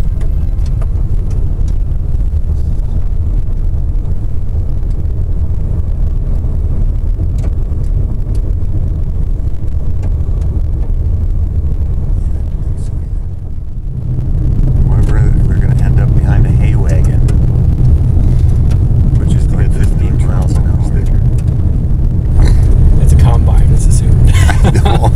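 Tyres on a gravel road heard from inside a moving car: a steady low road and engine rumble that drops briefly and comes back louder about 14 seconds in.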